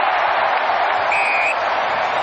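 Stadium crowd cheering loudly just as a try is scored, with a short high whistle about a second in.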